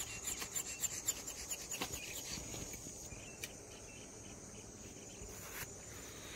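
A steady, high-pitched insect chorus at a lakeshore, with a quick run of light clicks in the first two seconds or so that fades into a quieter, even background.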